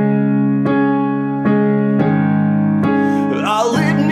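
Electronic keyboard playing sustained piano chords, a new chord struck about every three-quarters of a second. A man's singing voice comes in near the end.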